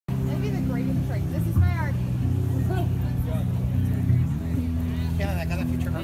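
Live cello and bass music with low held notes that shift pitch every second or two, with people talking over it.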